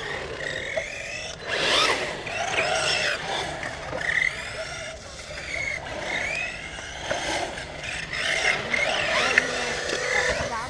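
Arrma Talion BLX 6S brushless RC car being driven hard, its electric motor whining up and down in pitch as the throttle is worked on and off, with a short loud rush of noise about a second and a half in.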